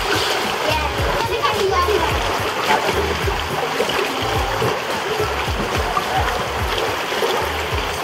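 Steady rushing of water from a water-park slide, mixed with music with a regular bass beat and scattered children's voices.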